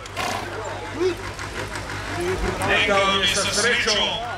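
Mostly a man's voice speaking, with other voices around it, over a steady low hum.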